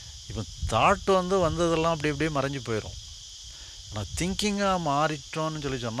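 A steady, high-pitched insect chorus drones throughout, under a man's voice speaking over a microphone. He talks in stretches from about a second in and again from about four seconds.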